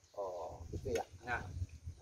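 Brief, quiet fragments of a man's voice between stretches of louder talk.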